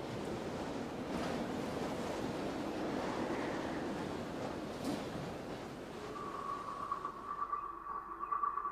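A steady rushing noise, like surf or wind, fades away, and about six seconds in a single steady high-pitched tone comes in and holds.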